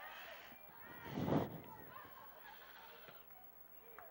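Faint, distant voices of players and spectators calling out across an open soccer field, with a brief louder rush of noise a little over a second in.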